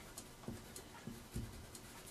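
Faint rubbing of a pink rubber eraser on drawing paper, erasing pencil lines, with a few soft scuffs.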